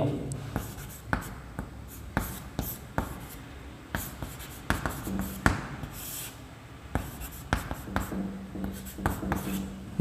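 Chalk writing on a chalkboard: a run of irregular short taps and scratching strokes as an algebraic expression is written out.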